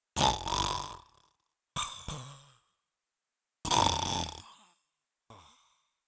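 A man makes four rough, wordless throat sounds. Each starts suddenly and trails off, coming about every one and a half to two seconds, and the last is the weakest.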